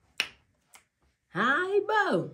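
A single sharp click, then a woman's voice in a drawn-out sound whose pitch rises and then falls, starting about a second and a half in.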